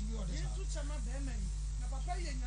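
A faint voice talking over a steady electrical hum and line hiss.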